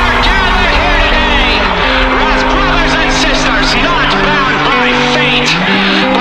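A rock song playing: a singing voice with a wavering pitch over held, distorted low notes that step to a new pitch every second or so.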